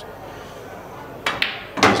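Quiet room tone, then just past halfway a single sharp click of pool balls from a shot, ringing briefly.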